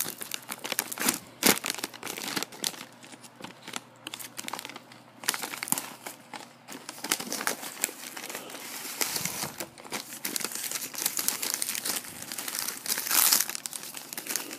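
Foil pouch of freeze-dried astronaut ice cream being opened and handled: the packaging crinkles and crackles irregularly throughout.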